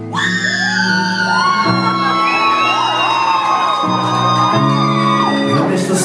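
A live pop band plays sustained chords that change a few times, with high held and wavering vocal lines and whoops over the top.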